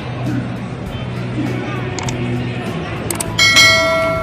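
Subscribe-button animation sound effect: a sharp click about three seconds in, then a bright bell chime that rings out and fades. It plays over background music and crowd chatter.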